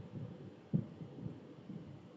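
Faint, irregular soft low thumps from handwriting with a stylus on a tablet.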